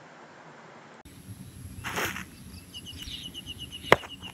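Drill movement on asphalt: a brief swish of movement about two seconds in, then a single sharp stamp of a shoe on the asphalt just before the end as the about-turn is completed. A bird chirps rapidly in a quick run of high notes through the last second.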